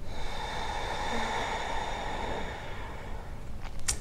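A woman's slow, deep breath during a yoga pose, one long airy breath lasting about three and a half seconds that fades out near the end.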